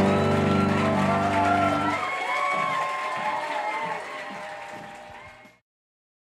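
The final chord of the song rings out on a grand piano, and its low notes drop away about two seconds in. An audience then cheers and whoops over applause, growing fainter until the sound cuts off suddenly near the end.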